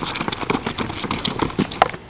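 Footsteps of several people running on concrete pavement: a quick, uneven stream of shoe impacts.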